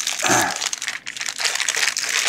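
Thin clear plastic bag crinkling and rustling as hands unwrap a small round steel magnetic parts tray from it, in irregular crackles with a brief lull about halfway through.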